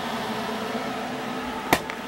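Steady hum of a cooling fan with a faint tone, and one short click near the end.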